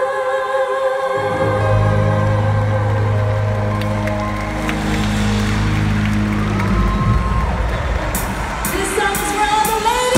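Live female vocal group singing the close of a ballad in harmony: held sung notes over a sustained low band chord that enters about a second in and fades about seven seconds in, with crowd noise rising through the second half as the song ends.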